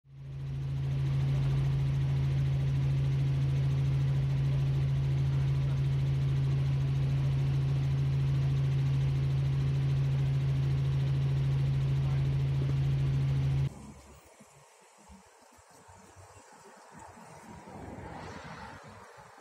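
Helicopter cabin noise heard from inside: a loud, steady drone with a strong, constant low hum. It cuts off abruptly about 14 seconds in, giving way to much quieter outdoor sound.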